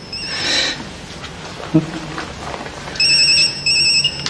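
An electronic phone ringtone trilling in short bursts of a steady high tone. One burst ends just as the sound begins, and two more follow about three seconds in.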